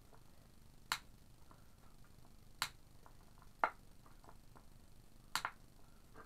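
Sharp clicks at irregular intervals: four loud ones about a second or two apart, with fainter ticks in between.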